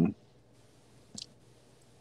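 A pause in conversation: the end of a spoken word at the very start, then quiet room tone broken by one brief, sharp click about a second in.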